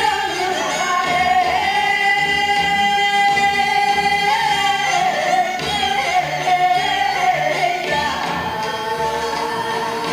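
Trot song: a singer holding long notes over instrumental backing, with one note held for about three seconds near the start.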